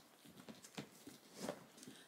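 Faint light taps and rustling from a leather handbag being handled as its strap and flap are undone to open it.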